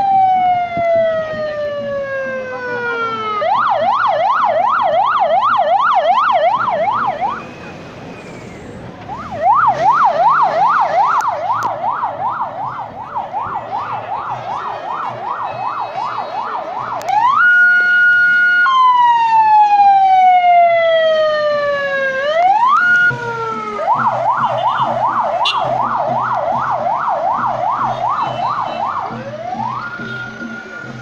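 Electronic vehicle siren cycling through its modes: a long falling wail, then a rapid yelp of about four sweeps a second. It stops briefly about eight seconds in, returns with the yelp, switches to a steady two-note tone, then a falling wail that jumps back into the yelp.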